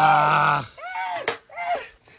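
A man's voice holding a long, steady 'ahh', then two short rising-and-falling calls, with a sharp smack between them about a second and a half in.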